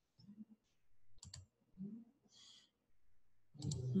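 Two quick computer mouse clicks a little over a second in, amid faint low room sounds.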